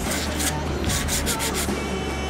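Drawing strokes scratching across textured paper, a quick run of about half a dozen rubbing strokes, over background music.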